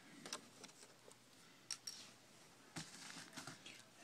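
Near silence with a few faint clicks and rustles of hands handling laptop parts, about a third of a second in, near two seconds and near three seconds.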